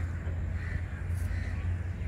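A bird calling in short repeated calls a little under a second apart, over a steady low rumble.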